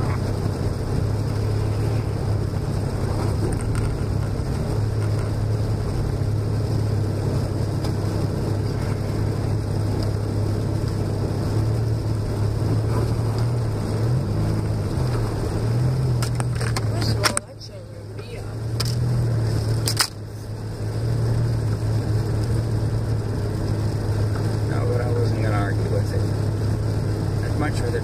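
Car engine and tyre noise heard inside the cabin while driving on a snow-covered road: a steady low drone, with a brief rise and fall in pitch about halfway through. Twice, a little past halfway, the sound drops out suddenly and swells back over a second or two.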